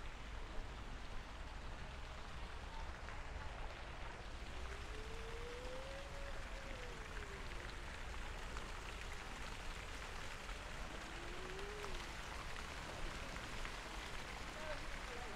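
Fountain water splashing steadily into a stone pool, a continuous even hiss. A faint tone rises and falls twice, about a third of the way in and again later.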